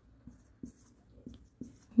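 Dry-erase marker writing on a whiteboard: a series of short, faint strokes a few tenths of a second apart.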